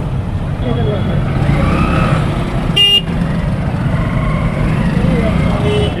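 Congested street traffic: a steady rumble of motorbike and car engines with faint voices of passers-by, and a short horn toot about three seconds in.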